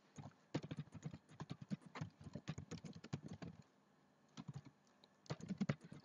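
Typing on a computer keyboard: a quick, irregular run of keystrokes, a short pause about three and a half seconds in, then a few more keystrokes near the end.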